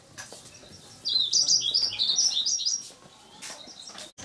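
A rapid run of high, bird-like chirps and warbles lasting about two seconds, starting about a second in, over a faint background.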